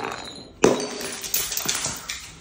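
Glass soft-drink bottle smashing on concrete steps a little over half a second in, with bright ringing, followed by a few more clinks and knocks as the pieces scatter down the steps.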